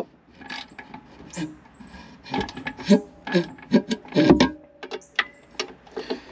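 A socket ratchet with a 7 mm socket clicking in short, irregular strokes as it tightens the hose clamp on a jet ski's exhaust hose, with a few metallic knocks, busiest in the middle.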